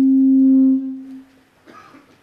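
Public-address microphone feedback: a loud, steady tone at a single pitch rings through the hall's loudspeakers, then dies away about a second in.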